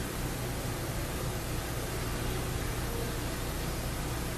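Steady, even hiss with a faint low hum underneath: background noise of the recording in a pause between sentences, with no distinct event.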